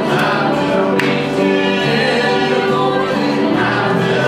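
A congregation singing a gospel hymn together.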